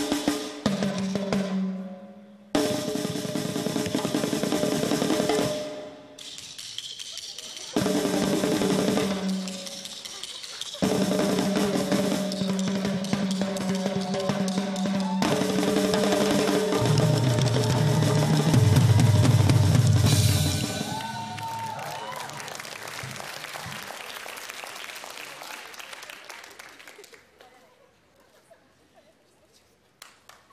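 Snare drum and marching tenor drums played in rapid patterns over music with sustained pitched notes, breaking off sharply several times, then dying away over the last several seconds.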